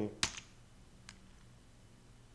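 A single sharp computer key click about a quarter of a second in, a much fainter click about a second in, and otherwise quiet room tone.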